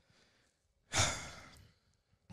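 A man's heavy sigh into a close handheld microphone, about a second in, fading out over about half a second.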